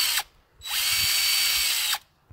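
Cordless drill spinning a twist bit freely with no load. A short burst stops a moment in, then a longer run of over a second with a steady high whine cuts off suddenly near the end.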